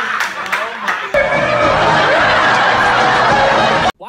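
A group of young people laughing and shrieking loudly, with a few sharp hand claps in the first second. The din jumps louder a little after a second in, holds steady, and cuts off abruptly near the end.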